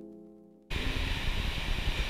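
A held piano chord fades out, then cuts suddenly, less than a second in, to loud, steady outdoor noise with a low rumble.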